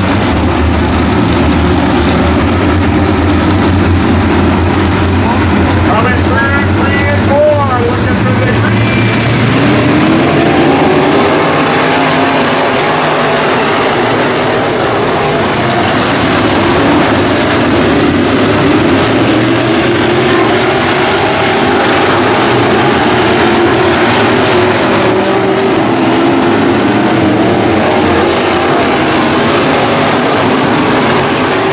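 A field of IMCA Modified dirt-track race cars with V8 engines: first running together in a low steady rumble at pace speed, then about ten seconds in accelerating hard at the restart, many engine notes rising and falling as the pack races into the corners.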